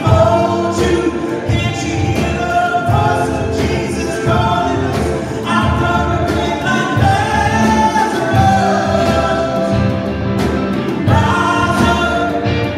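Live worship band playing a song: several voices singing together over guitars and a drum kit with a steady beat.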